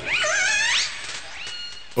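An animal's high, wavering cry that slides up and down in pitch for under a second, followed near the end by a faint, thin, steady high tone.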